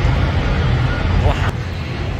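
Steady low rumble of construction-site machinery, with a faint brief voice a little past halfway.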